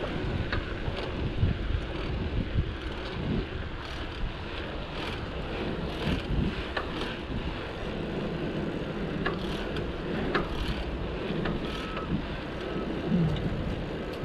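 Wind rushing over a chest-mounted action camera's microphone while riding a bicycle along a paved path, with a steady rumble and scattered light clicks and rattles from the bike.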